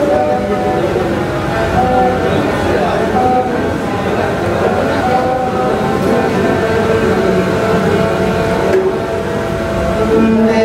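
Two bowed fiddles playing a melody of long held notes that slide from pitch to pitch, over a steady low background noise.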